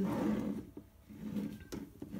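Collapsible plastic colander being handled, with a brief rub of plastic in the first half second and a faint tap near the end.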